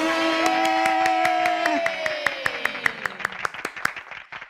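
One person clapping fast, about six claps a second, in applause, under a long held vocal cheer that slides down in pitch and fades about two seconds in.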